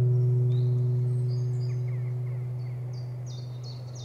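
The last guitar chord of the background music rings on as a low held note, slowly fading. Birds chirp with short high notes from about half a second in.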